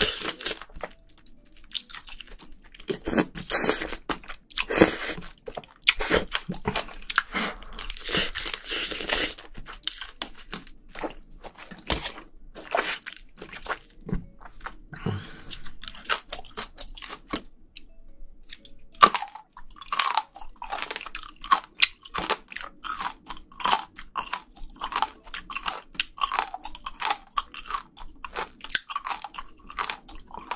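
Close-miked chewing of spicy braised seafood and bean sprouts: loud, wet, crunching bites in the first half, then steady chewing at about two chews a second from about two-thirds in.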